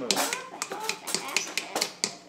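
Kitchen utensils clicking and scraping against metal: a run of short, sharp clicks and scrapes, under faint talking.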